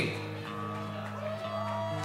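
Steady drone of held notes from the band's amplified stage instruments, with a higher sustained tone joining about half a second in, over faint crowd noise.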